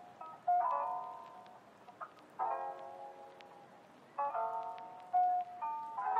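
Background music: a slow, gentle instrumental with soft keyboard chords, a new chord struck every one to two seconds.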